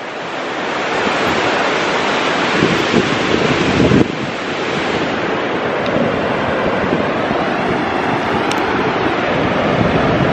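Breeze blowing across the camera microphone together with surf washing onto the beach: a loud, steady rush of noise with a short break about four seconds in.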